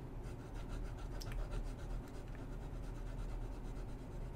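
Platinum President fountain pen's broad cursive italic nib scratching across paper in quick, repeated back-and-forth strokes as it shades in an ink swatch. The strokes are faint.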